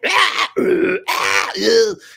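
A man's voice making weird, rough, grunting vocal noises, a short one then a longer one, acting out the kind of strange screams and creature noises recorded from a voice performer for horror-film sound design.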